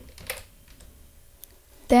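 A few faint keystrokes on a computer keyboard.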